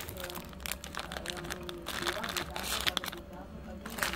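Foil-lined Oreo cookie wrapper crinkling as it is torn open and handled to pull a cookie out: a dense run of crackles that thins out about three seconds in.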